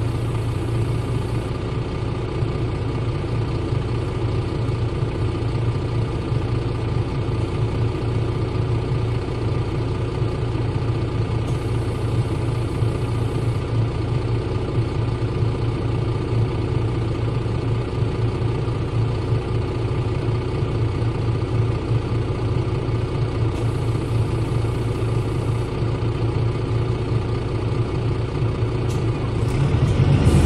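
Mercedes-Benz OM906 LA inline-six turbodiesel of a Citaro city bus idling with a steady, even hum, heard close to the rear engine.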